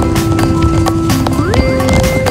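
Background music: a sustained melody note held over a busy, clattering beat, dropping lower about a second in and then sliding up to a higher held note near the end.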